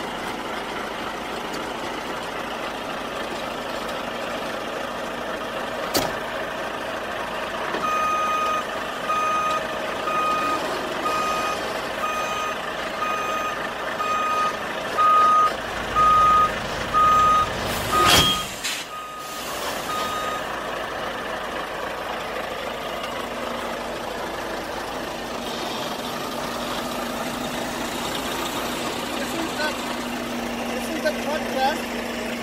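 Semi tractor reversing under a trailer to couple: its back-up alarm beeps steadily at one pitch, about one and a half beeps a second, over the running truck, starting about a third of the way in and stopping about two-thirds through. A single loud, sharp sound comes about eighteen seconds in.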